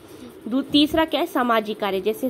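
A woman's voice speaking in short, halting phrases.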